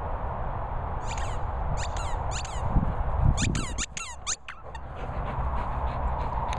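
A dog's rubber squeaky toy squeaking in quick groups of short, falling squeaks as it is bitten, with a fast run of squeaks past the middle.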